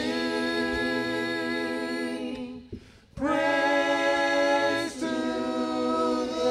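Group of voices singing a slow worship song in long, held notes. There is a short break about halfway through, then the singing resumes.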